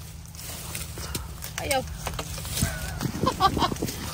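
People talking and laughing briefly, a short burst about one and a half seconds in and more laughter near the end, over a steady low rumble.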